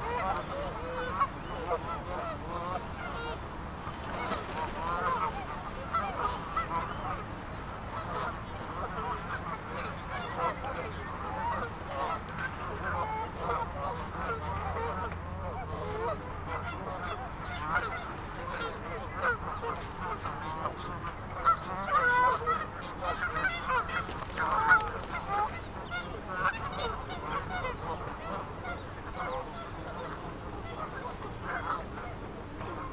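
A flock of Canada geese honking and calling, many short calls overlapping without a break, with a louder stretch about two-thirds of the way through.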